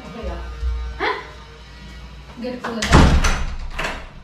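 A wooden front door swung shut about three seconds in, the loudest sound here, with a low thump, over voices and background music.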